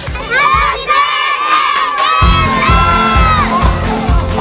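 A group of children shouting and cheering together in high voices. A music track with a steady beat comes in about two seconds in.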